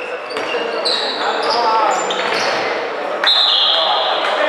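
Echoing sports-hall sound of an indoor handball game: shoes squeaking sharply on the wooden floor, the ball bouncing, and shouting from players and spectators. A louder high squeak or whistle-like tone comes in near the end.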